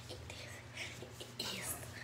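A girl whispering in short breathy, hissing syllables over a low steady hum.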